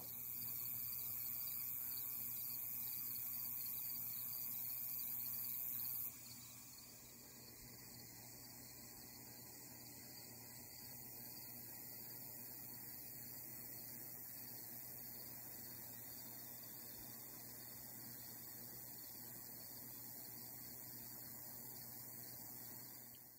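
Faint, steady outdoor background noise with a high hiss, a little louder for the first six seconds and then dropping to a lower, even level.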